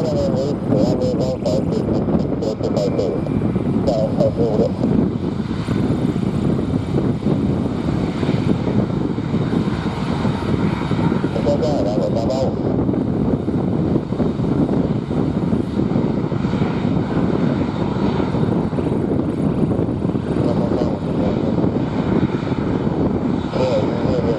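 Jet engines of an Airbus A330-200F freighter running at low taxi power as it rolls along the taxiway, a steady, unbroken rumble.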